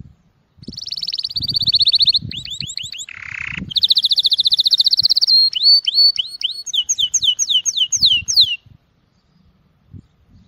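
Male domestic canary singing a courtship song. It opens with rapid rolling trills, gives a short harsh buzz about three seconds in, then a series of clear downward-sliding whistles, and stops abruptly near the end.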